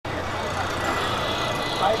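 Outdoor street noise with indistinct voices talking over a steady background rush of traffic.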